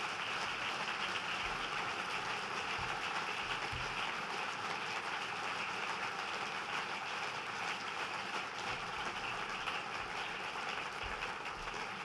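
Large seated audience applauding: a dense, steady clapping of many hands.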